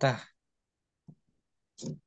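Speech trailing off at the start, then dead silence with one faint short tick about a second in, and speech starting again near the end.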